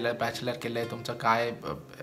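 A man speaking, with soft background music underneath.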